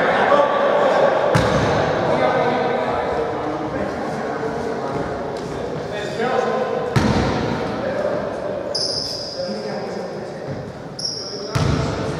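Players' voices echoing in a large gymnasium, with a basketball bouncing a few times on the hardwood court. Two short high-pitched tones sound near the end.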